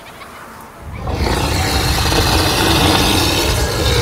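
An animated lion's loud roar, a sound effect that swells up about a second in and is held for about three seconds.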